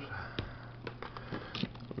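Faint handling sounds of plastic spice shakers: a few light clicks and a short rustle about one and a half seconds in, over a steady low hum.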